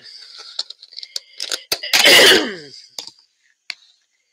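Objects being handled on a tabletop: scattered light clicks and taps, with one loud scraping burst about two seconds in that slides down in pitch, from a clear plastic container being moved.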